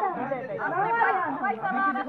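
Several people talking at once, their voices overlapping in a group conversation.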